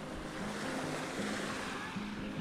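Small waves washing up on a sandy shore, with soft background music underneath.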